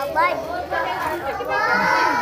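Many young children's voices chattering and calling out over one another in a room.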